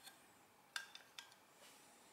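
Near silence broken by a few faint, light clicks of the counter's metal cover plate being handled, the loudest about three quarters of a second in.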